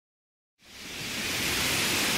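Ocean surf: a steady rush of breaking waves, fading in after about half a second of silence.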